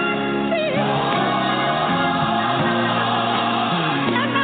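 Gospel music with a choir singing over sustained accompaniment.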